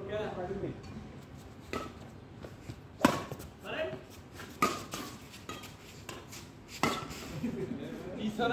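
Badminton rackets striking a shuttlecock during a doubles rally: four sharp hits a second or two apart, the loudest about three seconds in, with brief shouts from the players.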